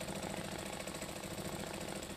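Sewing machine running steadily during free-motion quilting, the needle stitching in a fast, even rhythm through the quilt.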